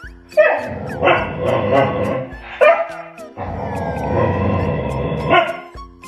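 A Labrador retriever vocalizing back at its owner in two long, drawn-out stretches of about two seconds each, with a short yip between them, over background music. It is protesting at being made to wait for a treat.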